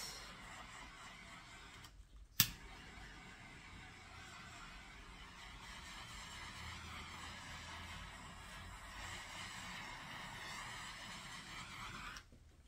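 Small handheld torch hissing steadily while it is passed over freshly poured acrylic paint to pop surface bubbles. The hiss breaks off briefly, a single sharp click comes about two seconds in, and the hiss carries on until it cuts off near the end.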